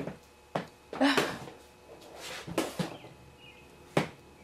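Faint birds chirping outside, heard from inside a small room, among a few short knocks and rustles close to the microphone.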